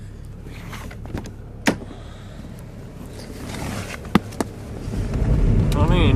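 A car engine running at idle, with a few sharp clicks and knocks of someone climbing into the car and handling the door. About five seconds in, the low rumble grows louder as the sound comes from inside the cabin.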